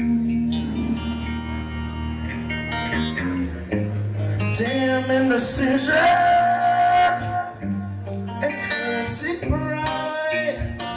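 Live rock band with electric guitar, bass and drums backing a male singer, who holds one long note a little past the middle.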